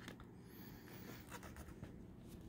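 Faint handling of a plastic CD jewel case and its paper booklet: a few light clicks and scratchy rubbing as fingers pick at the booklet and tray.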